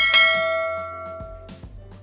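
Bell-chime sound effect of a subscribe-button animation, struck once and ringing out as it fades over about a second and a half, over background music.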